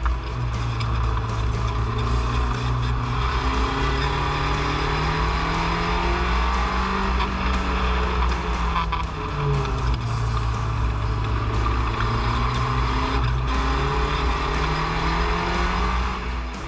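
Spec Racer Ford's 1.9-litre four-cylinder engine heard from the cockpit at speed on track, its note climbing and falling with throttle and gear changes. There is a sharp jump then drop in pitch about nine seconds in, at a gear change.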